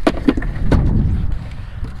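Several short, sharp knocks and clacks from handling a plastic cooler and metal crab tongs, over a steady low wind rumble on the microphone.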